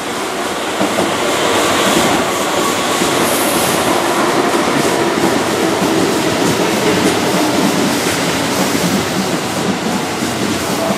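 Keihan 6000-series electric commuter train passing close by on a curve: steady running noise with evenly repeating wheel clicks over the rail joints, louder from about a second in.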